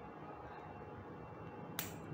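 A single sharp plastic click near the end: an RJ45 Ethernet plug latching into the IN socket of a PoE splitter.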